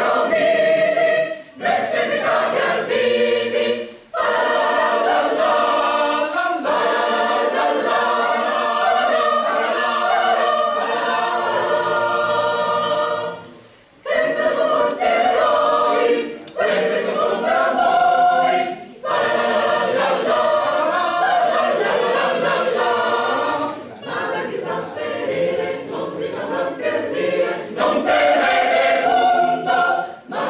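A polyphonic choir singing a cappella in several parts, in phrases separated by brief breaths, with one longer pause about two-fifths of the way through.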